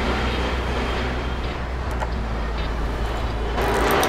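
Steady restaurant background noise: a constant low rumble under an even hiss, growing louder shortly before the end.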